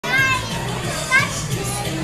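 Children's high-pitched voices calling out over background chatter and music; the loudest call comes just over a second in.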